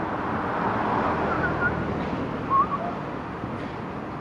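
Steady city street background noise from traffic, with a few short bird chirps: two about a second and a half in, and a louder one near the three-second mark.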